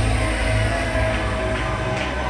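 Dance music played loud over a club sound system: held deep bass notes under steady synth lines.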